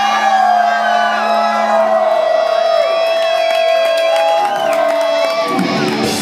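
Live rock band in a stripped-down passage: a long held note that bends and wavers, with no drums or bass under it, and the crowd whooping. The drums and bass come back in near the end.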